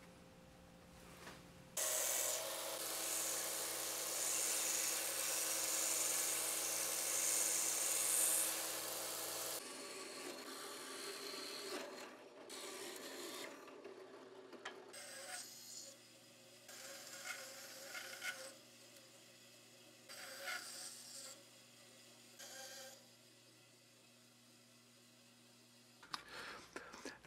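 A power tool runs steadily for several seconds. Then a bench drill press bores holes into a small pale wooden block, cutting in several short bursts.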